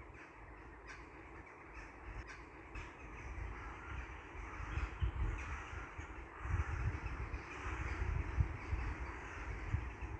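Outdoor ambience of birds calling over a low rumble that swells and grows louder in the second half.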